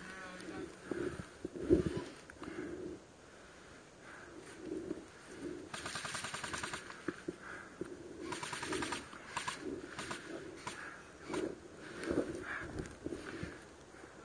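Airsoft guns firing rapid full-auto bursts: one burst of about a second, then a shorter one some two seconds later, followed by a few single shots.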